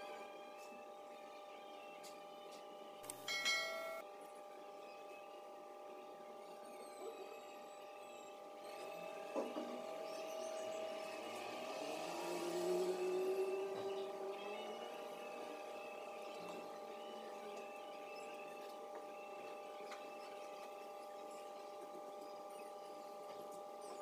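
Fast-forwarded background sound: a faint steady electrical hum made of several even tones, with a brief sharp sound about three seconds in and a louder swell with a rising tone around twelve to fourteen seconds.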